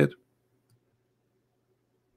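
A man's speech breaks off at the very start, then near silence with only a very faint steady hum.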